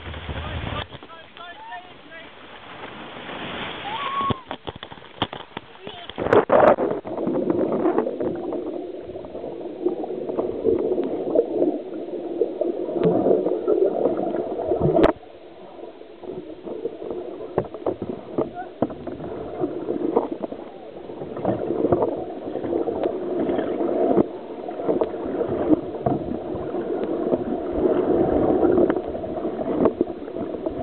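Rushing weir water around an open canoe. From about six seconds in it becomes a muffled, churning gurgle of turbulent water with the camera under water. A single sharp knock comes about halfway through.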